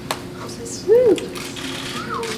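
A short voiced exclamation from a person, rising then falling in pitch, about a second in, with a few sharp clicks around it.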